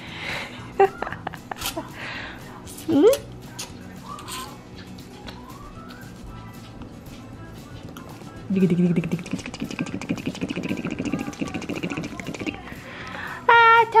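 Background music with a baby's brief vocal sounds, one short rising squeal about three seconds in, and a rougher sustained vocal-like sound for about four seconds in the second half.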